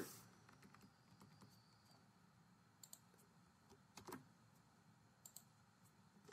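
Faint computer keyboard keystrokes, a few scattered clicks against near silence, the loudest about four seconds in.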